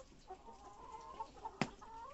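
Several Tetra laying hens clucking at once in a flock, their calls overlapping, with one sharp knock about one and a half seconds in.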